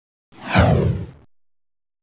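Whoosh sound effect for an animated fireball streaking across the screen: one sudden swish that falls in pitch over a low boom, lasting about a second and fading out.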